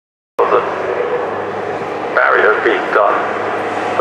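A race commentator talking over the circuit public-address loudspeakers, with a steady low vehicle drone underneath; the sound cuts in abruptly just after the start, out of silence.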